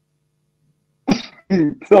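About a second of near silence, then a man clears his throat and coughs twice before he starts speaking again near the end.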